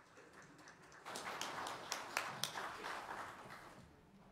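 Congregation applauding after a solo: faint clapping that swells about a second in and fades out near the end.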